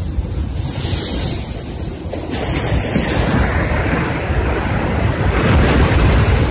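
Wind buffeting the microphone over the steady wash of surf breaking on a rocky shore, the low rumble rising and falling in gusts.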